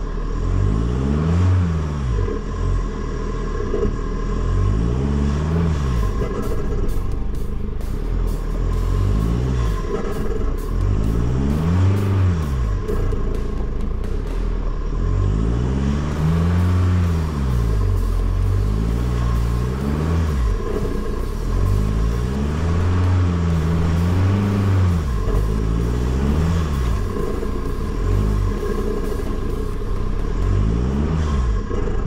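Off-road truck engine revving up and falling back again and again, about every three to four seconds, over a steady low rumble as the truck crawls over a rutted, muddy trail.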